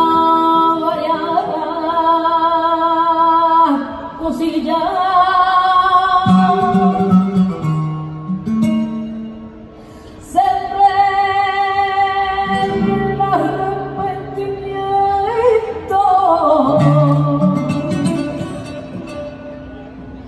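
Live flamenco cante: a woman's voice singing long, ornamented lines with a wavering vibrato, accompanied by a flamenco guitar. The singing eases to a brief lull about halfway through, then comes back strongly on a new phrase.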